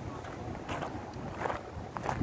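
Wind rumbling on the microphone of a camera carried on foot, with footsteps on a paved path about every three-quarters of a second.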